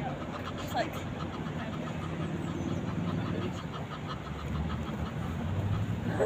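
A low, steady motor drone, a vehicle engine somewhere off, grows louder over the last couple of seconds, with voices murmuring in the background.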